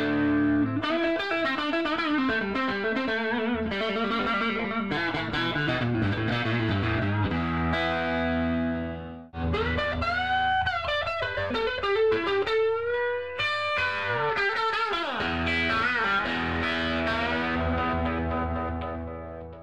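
Electric guitar played through a 1960 Fender tweed Deluxe tube amplifier: single-note lead lines and chords, with string bends. The playing breaks off for a moment about nine seconds in, then carries on.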